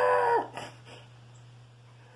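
A person's drawn-out wordless vocal groan, held on one pitch, dropping and cutting off about half a second in. It is followed by a faint steady room hum with a couple of soft ticks.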